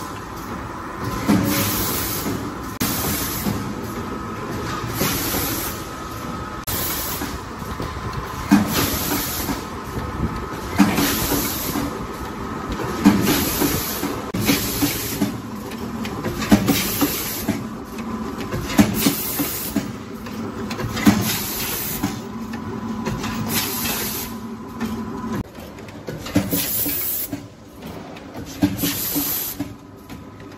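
Automatic spout-pouch filling and sealing machine running: short, sharp hisses of compressed air from its pneumatic cylinders and suction pick-up every one to two seconds, with clunks of the moving mechanism and a faint steady whine.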